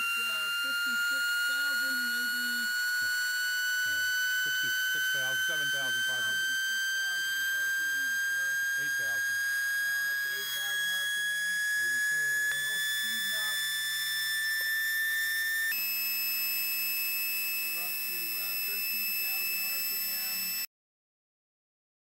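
High-pitched whine of an air-turbine-driven spindle on air bearings, spun by 70 PSI air against notches milled into its side. The pitch rises slowly as the spindle speeds up, then jumps to a higher steady whine about 16 s in, and stops abruptly about 21 s in.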